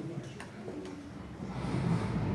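Faint voices murmuring in a hall during a lull, with a single click about half a second in.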